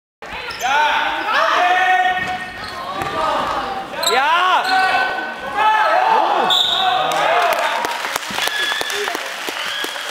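Basketball game in a sports hall: players calling out and shouting over the ball bouncing on the hall floor. Near the end comes a quick run of sharp thuds from the ball and feet.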